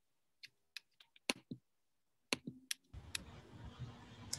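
Faint, scattered sharp computer clicks, about nine in three seconds. About three seconds in, the steady hiss and low hum of an open microphone comes on as a muted participant is unmuted.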